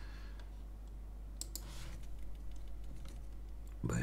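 A few computer mouse and keyboard clicks, the clearest about one and a half seconds in, followed by a short soft noise, over a steady low hum.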